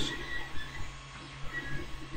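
Quiet pause with a low steady room hum and a few faint, soft handling sounds from small paper parts being picked up.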